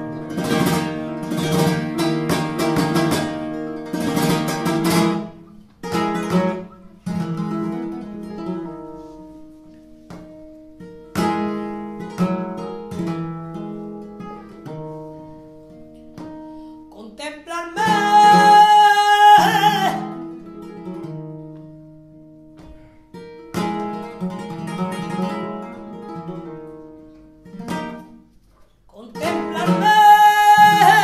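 Flamenco guitar accompanying a seguiriya: fast strummed chords at the start, then picked single-note passages. A woman's voice sings one long, wavering phrase about eighteen seconds in and comes back at the very end.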